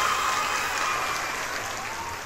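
Crowd applauding and cheering, slowly fading out.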